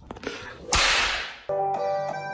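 A single sharp crack, like a whip, about three-quarters of a second in, with a hissing tail that fades over about half a second. Keyboard music starts suddenly about a second and a half in.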